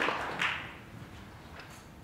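Audience applause tapering off and dying away in the first half-second, leaving a quiet room with a few faint taps.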